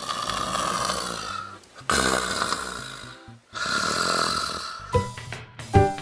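A person making exaggerated snoring sounds, three long snores in a row, for a puppet asleep in bed. Short pitched musical notes come in near the end.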